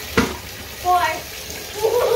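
Bathtub filling from a running tap, a steady rush of water, with a single sharp knock just after the start.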